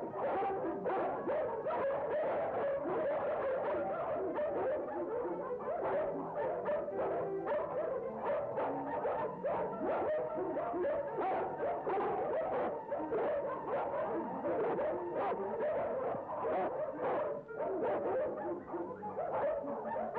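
Film score music with dogs barking repeatedly over it.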